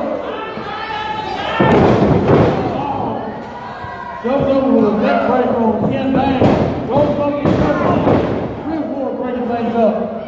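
Wrestlers' bodies hitting the wrestling ring mat: a heavy thud about one and a half seconds in and more thuds later, amid shouting voices.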